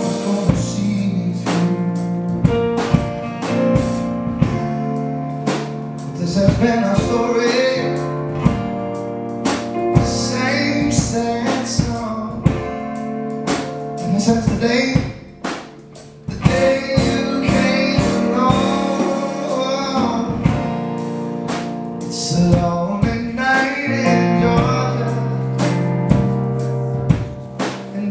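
A man singing live with his own strummed acoustic guitar. The music briefly drops away about fifteen seconds in, then picks up again.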